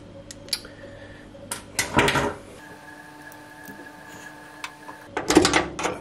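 A few light knocks and clicks as a range hood's metal light panel is pushed and fitted back into place by hand.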